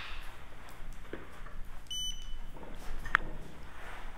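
A single short, high electronic beep about two seconds in, followed about a second later by a brief sharp click.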